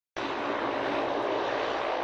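Jet engine of a Harrier jump jet running steadily, a constant rushing noise that cuts in just after the start.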